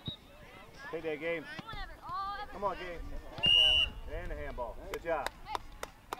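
A referee's whistle blows one short, steady blast about halfway through, louder than anything else. Around it, players and spectators call out across the field, and a few sharp taps come near the end.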